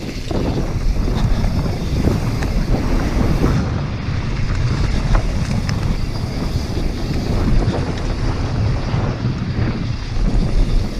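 Wind buffeting an action camera's microphone and tyres rumbling over a dirt trail as a mountain bike descends at speed, with scattered rattling clicks from the bike.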